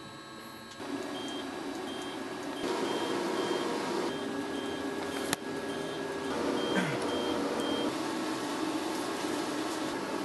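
Laser hair-removal machine beeping in a steady run of short high beeps, about two a second, as it pulses over the chest, with a steady rushing noise underneath. A single sharp click about five seconds in.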